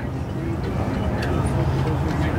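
A steady low engine rumble, as of a motor vehicle running.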